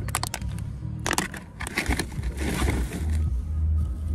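Plastic grocery packaging crinkling in several short bursts as items are handled, with wind rumbling on the microphone, heaviest near the end.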